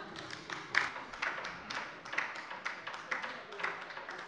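Sparse, scattered applause: a few people clapping irregularly in a parliament chamber at the end of a speech.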